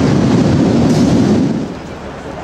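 Loud, rumbling din of a busy subway station, which drops away sharply about one and a half seconds in.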